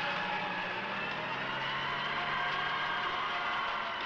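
Engine of a CVR(T) tracked armoured vehicle running steadily under load as it drives out of a deep wading tank, its tracks climbing the wet ramp. The engine note drops a little about a second in.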